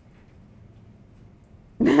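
Low steady room noise, then a woman suddenly laughs out loud near the end.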